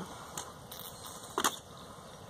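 Sharp clicks from handling a Lancer Tactical airsoft electric rifle: a couple of faint ones about half a second in and one louder click about a second and a half in.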